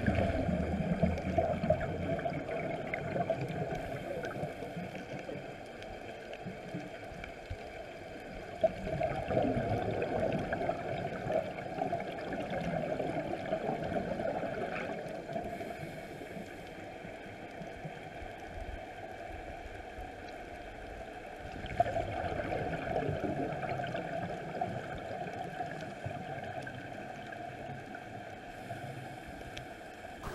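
Underwater sound of a scuba diver breathing through a regulator. There are three bursts of exhaled bubbles, gurgling, roughly twelve seconds apart, with quieter water noise between them.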